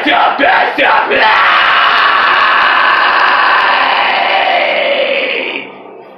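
A man's harsh metal vocals screamed into a microphone: a few short screamed syllables, then one long held scream of about four and a half seconds that dies away just before the end.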